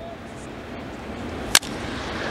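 A single sharp crack of a wooden baseball bat meeting a pitched ball, solid contact, about one and a half seconds in, over the steady background noise of a ballpark crowd.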